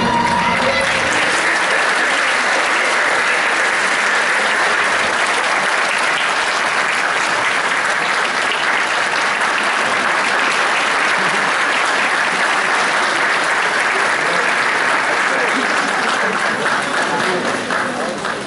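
A hall audience clapping steadily, easing off near the end. The last notes of the dance music fade out in the first second.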